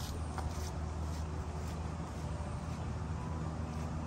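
Steady low outdoor background rumble with a faint hiss above it and a few light ticks, no voices.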